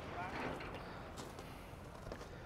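Faint, steady outdoor background noise, with a brief faint voice-like sound about half a second in.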